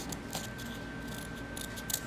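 Small curved nail scissors cutting around a water-slide nail decal on its paper sheet: a few short, light snips.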